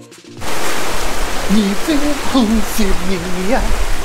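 Background music cuts off, then a steady rushing noise with an uneven low rumble: wind buffeting the microphone outdoors, while a man speaks a few words.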